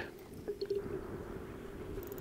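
Quiet water ambience around a small fishing boat: faint lapping and a few small drips, with a steady low hum underneath.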